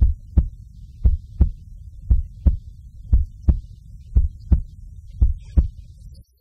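Heartbeat sound effect: six low double thumps, lub-dub, about one beat a second, over a steady low rumble.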